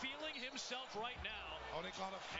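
Basketball game broadcast sound at low level: a ball bouncing on the hardwood court, with faint play-by-play commentary underneath.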